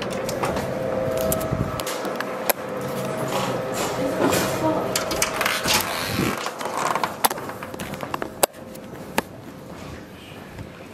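Footsteps and scuffs on a hard lobby floor as people walk through glass entrance doors, with irregular sharp knocks and clicks. The sharpest knocks come in the second half, over a faint steady hum and indistinct voices.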